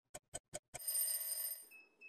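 Stopwatch sound effect: quick even ticking, about five ticks a second, that ends in a bell-like ring about three-quarters of a second in and fades over about a second. A thin, high steady beep starts near the end.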